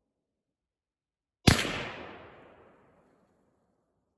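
A single gunshot about a second and a half in, its sharp crack followed by an echo that dies away over about a second and a half.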